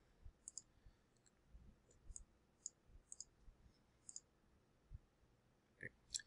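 Faint computer mouse clicks, about a dozen scattered through near silence, some in quick pairs like double-clicks.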